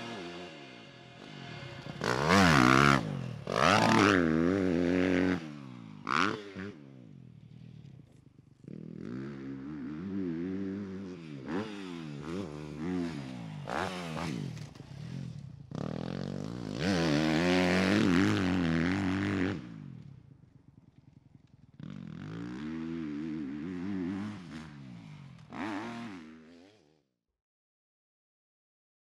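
Motocross dirt bike engine revving hard, its pitch climbing and dropping again and again as the throttle is opened and shut, with several louder sharp bursts along the way. The sound dies away about a second before the end.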